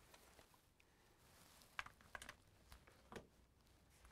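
Near silence with a few faint, short clicks and taps of small plastic toy parts being handled, about halfway through and again near the end.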